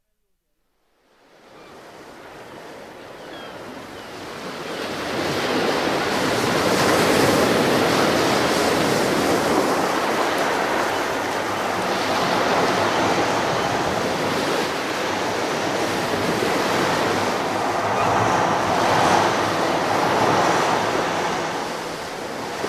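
Recorded ocean surf that fades in from silence over the first few seconds, then a steady wash of waves with slow swells.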